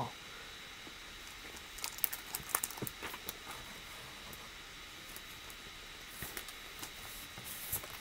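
Faint crinkling and light taps of comic books being handled and shuffled, in two short spells, about two seconds in and again near the end.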